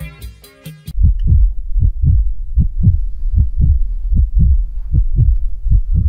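Heartbeat sound effect: deep double thumps, lub-dub, about seven beats at a little over one a second. It follows a short tail of music with ticking beats.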